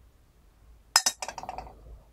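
Glass tea strainer set down on a glass fairness pitcher: one sharp clink about a second in, then a quick run of smaller rattling clinks for about a second as it settles.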